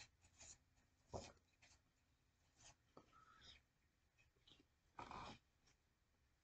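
Faint rustling of paper handled in the hands, a few short rustles, the loudest about five seconds in.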